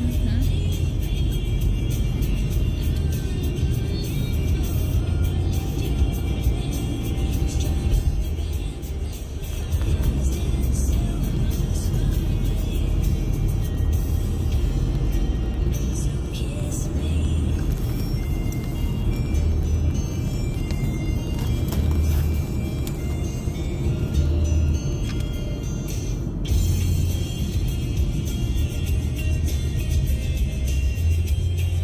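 Music playing on the car stereo inside a moving car, over the low rumble of road noise.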